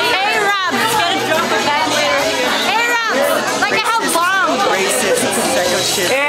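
Several people talking and exclaiming over one another close up, over the chatter of a crowd.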